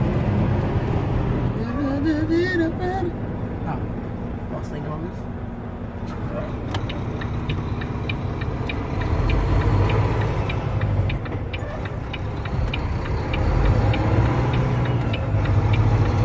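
Cab of a Volvo semi-truck under way: the diesel engine and road noise run steadily, the engine swelling twice in the second half. A light regular ticking, about two a second, runs through the second half, with a brief wavering tone about two seconds in.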